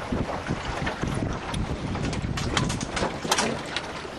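Wind buffeting the microphone and water rushing past the hull of a small sailing boat as it tacks, with a run of sharp snaps and clicks from the jib and rigging in the middle as the self-tacking jib swings across.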